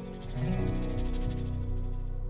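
Closing bars of an acoustic worship band: acoustic guitar and keyboard hold the final chords, with the low notes shifting twice, under a fast, even high shimmer.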